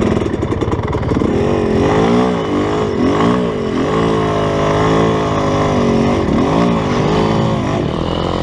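GasGas dirt bike engine being ridden, its revs rising and falling with the throttle about once a second.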